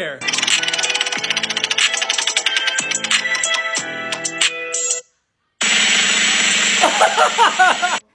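Prize-wheel spinning sound effect: rapid ticking over a jingly tune for about five seconds, cutting off suddenly. After half a second of silence, music plays with a voice over it.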